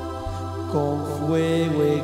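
Live religious song: a man singing with a band that includes electric bass over sustained accompaniment, his voice coming in about three-quarters of a second in.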